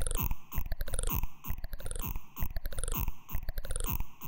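Minimal techno breakdown without the kick drum: a dense run of crunchy, clicking glitch percussion with a swept filter effect, in a pattern that repeats about once a second.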